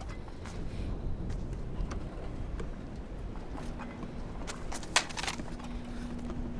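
Footsteps in loose sand over a low steady rumble, with one sharp click about five seconds in and a low held tone entering partway through.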